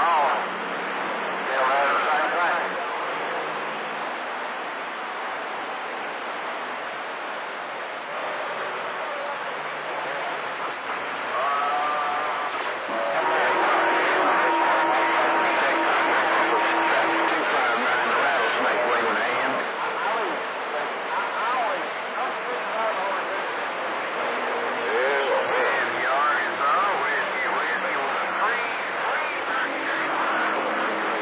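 CB radio receiving skip on channel 28: weak, hard-to-follow voices of distant stations fading in and out under steady static hiss, with a steady whistle tone partway through. It gets louder a little under halfway in.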